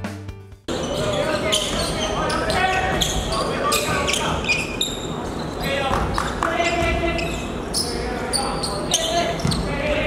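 Basketballs bouncing on a hardwood gym floor, with players' voices calling out; the sound echoes in a large hall. A music track cuts off suddenly in the first second.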